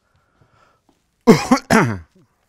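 A man coughs twice in quick succession, loudly, about a second and a quarter in.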